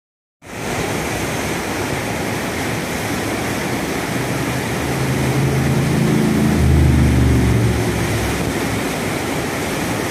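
River whitewater at high flow plunging and churning through a narrow rock gorge: a steady roar of rushing water. A low hum swells under it in the middle and fades again.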